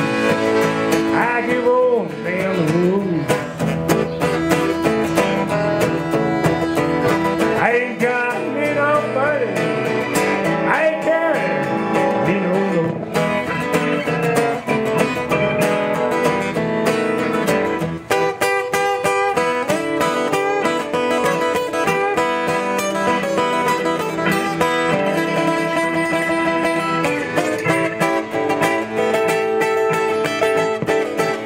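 Live blues instrumental break: acoustic guitar strumming the rhythm while a lead line bends notes over it for the first dozen seconds or so. After that, steadier held keyboard notes take over the lead.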